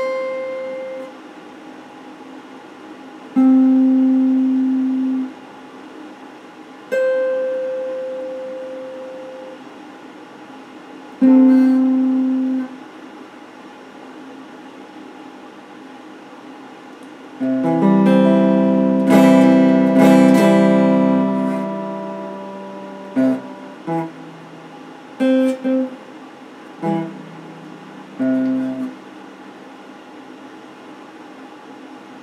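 Electric guitar played as sparse single notes, each left to ring and fade, with pauses between. A fuller run of several notes together comes a little past halfway, followed by short clipped notes near the end, with a faint steady hiss in the gaps.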